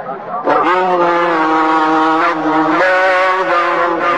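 Male voice reciting the Quran in a slow, melodic chant. After a brief pause it swoops up about half a second in into long held notes, and the pitch steps up slightly past the middle.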